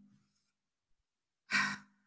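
A person's short sigh about one and a half seconds in, with near silence before it.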